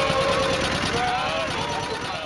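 Men's voices singing together unaccompanied, holding and gliding between notes, over the steady running of the motorboat's engine.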